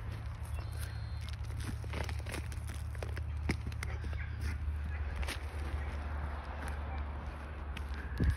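A wooden stick picking and scraping at moist potting soil around a root ball of black walnut seedlings, with irregular small crackles and clicks as soil and fine roots break loose, over a steady low rumble.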